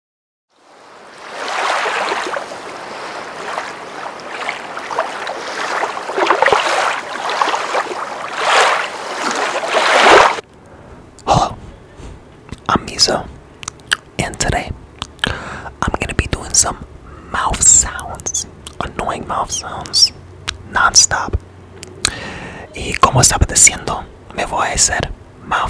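A dense hiss fades in and runs for about ten seconds, then cuts off abruptly. After that come close-miked mouth sounds: sharp wet clicks and smacks at irregular intervals, mixed with soft whispering.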